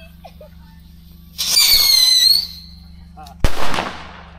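A whistling firework rocket in flight: a loud, shrill whistle that falls slightly in pitch and lasts about a second, then a sharp bang as it bursts, about three and a half seconds in.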